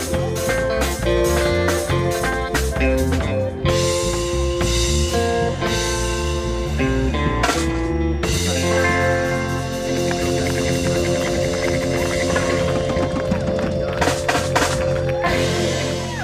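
Live band playing an instrumental passage with drum kit, electric guitars, bass and keyboard over a steady beat, closing with a quick run of drum hits near the end.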